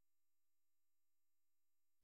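Near silence: the narration pauses and the recording has been gated to digital silence, leaving only a very faint steady electronic hum.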